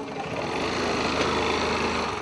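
A small motor scooter engine running as the scooter pulls away.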